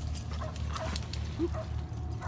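Dogs playing at the water's edge: a few short yips and whines scattered through, with light clicks and knocks over a low steady rumble.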